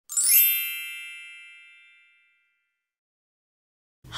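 A bright chime struck once, with a quick rising shimmer in its high notes, ringing out and fading away over about two seconds.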